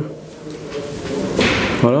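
A man pauses mid-interview, then takes a short, sharp breath in just before he speaks again.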